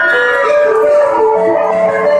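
Recorded song music with sustained melodic notes; a high gliding tone bends down and fades in the first half second.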